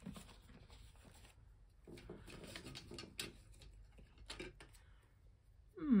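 Soft rustling and light clicks of clear plastic binder sleeves and paper money being handled as pages are flipped, with a few sharper ticks in the second half.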